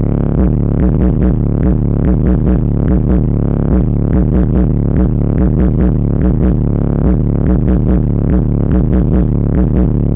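Bass-heavy electronic music played very loud through a car audio system with two DLS Ultimate UR15 15-inch subwoofers, heard from inside the car's cabin, with a steady, evenly repeating deep bass beat.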